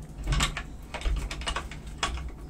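Guinea pigs and a rabbit crunching and rustling leafy greens and stalks: a short burst of crisp clicks about a third of a second in, then a longer run of quick clicks through the middle.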